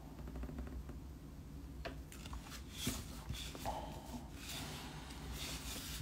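Faint scratching of a pen tip inking on thick watercolour paper, mixed with the rustle and slide of the card being turned on the desk, in short irregular strokes that grow busier about two seconds in.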